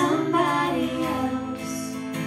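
Live band music: female voices singing a held, sliding melody over acoustic guitar.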